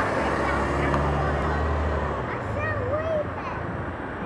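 Mercedes-Benz O530 Citaro city bus's diesel engine pulling away from a stop, its low steady hum dropping off about two seconds in as the bus moves away. People's voices are heard over it.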